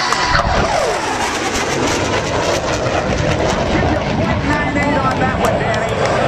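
Jet noise of a US Navy F/A-18 Hornet making a fast low pass, a loud rushing noise that sets in suddenly just after the start. Its pitch sweeps downward over the first second or so as the jet goes by.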